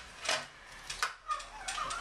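Hand-cranked drywall panel lift raising a plasterboard sheet: a few sharp clicks from its winch, then a wavering squeak near the end.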